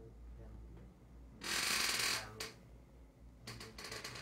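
Handling noise on a clip-on microphone worn on a robe as the wearer moves: a loud rustle lasting under a second, about a second and a half in, then a click and, near the end, a few more small clicks.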